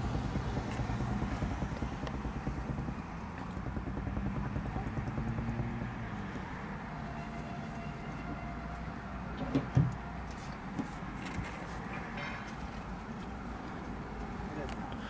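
Road traffic heard through the windshield from inside a car: a steady low rumble, a little louder in the first half, with a light knock about ten seconds in.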